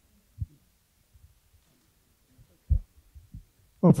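A few short, low thuds in a quiet hall, the loudest about two and a half seconds in, with faint low rumble between them. A man starts to speak right at the end.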